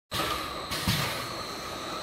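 Inline eight-head piston filling machine running: steady mechanical noise with two short bursts of noise a little under a second in.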